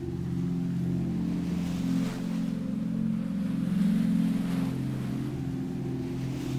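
Ambient music: sustained low drone chords held over the hiss of ocean waves, the surf swelling and fading about two seconds in and again near the end.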